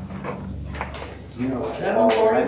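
Low voices in a meeting room with a couple of short clicks and paper handling; a voice picks up again about a second and a half in.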